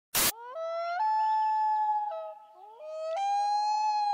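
A short burst of static noise, then a long, high pitched tone with overtones that holds a few steady notes, jumping between them and dipping briefly in the middle.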